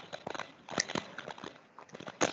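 Rapid, irregular clicks and taps, several a second, loudest about a second in and again near the end.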